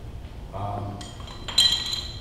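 A light tap and then a louder, bright clink with a short ringing tone, like glass or metal struck lightly, about a second and a half in; a man's voice is heard briefly before it.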